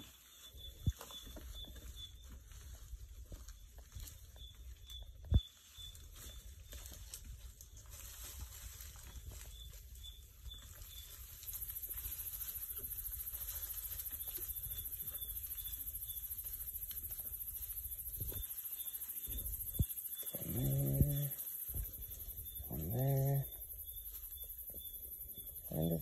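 Quiet night ambience in the bush: a steady, high insect shrill that grows louder about halfway through, with faint repeated chirping beneath it and a low rumble. A few handling clicks come in the first seconds, and two short, low voiced sounds come near the end.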